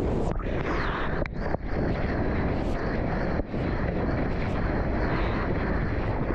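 Ocean water rushing and splashing right at the microphone of a camera riding at water level as a surfer paddles through swell and whitewater. It is a steady rush broken by a few brief dropouts.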